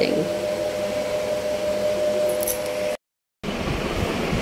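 Electric fan running: a steady whir with a faint constant hum in it. About three seconds in it breaks off into half a second of silence, then a similar steady whir goes on.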